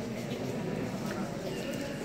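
Indistinct murmur of many visitors' voices in a large stone chapel interior.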